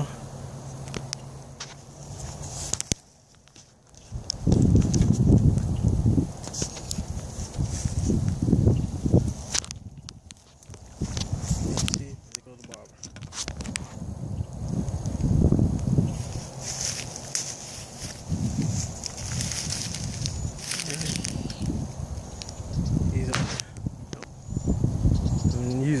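Uneven gusts of wind buffeting a phone microphone, coming and going in low rumbles, with a few sharp clicks or swishes now and then and a faint high hiss past the middle.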